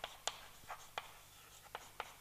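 Faint handwriting sounds: about five short taps and scratches of a pen on a writing surface.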